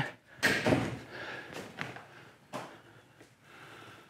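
Plastic hull of a Hobie fishing kayak scraping and knocking against the trailer and wheeled cart as it is pushed across: one loud scraping clunk about half a second in, then a couple of lighter knocks.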